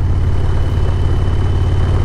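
2020 Harley-Davidson Low Rider S's V-twin through a Vance & Hines Big Radius exhaust, running steadily while cruising, heard from the saddle with wind rush.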